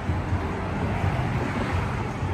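Wind buffeting the microphone: a steady, fluttering low rumble.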